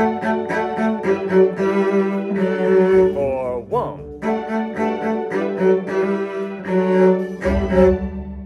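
Cello bowing the viola part of a string-orchestra arrangement of a pop song, played together with the full string-orchestra recording, through the coda. It closes on a held final note near the end.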